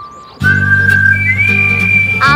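Background music: a held low chord comes in a moment after a brief hush, with a long high whistle-like note over it that steps up in pitch partway through.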